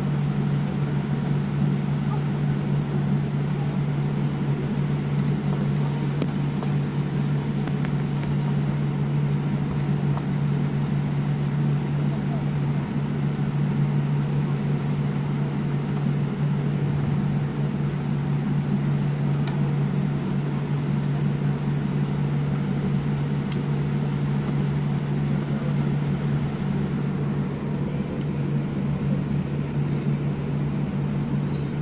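Steady cabin drone of a jet airliner taxiing, with a constant low hum from its engines running at low power, heard from inside the cabin.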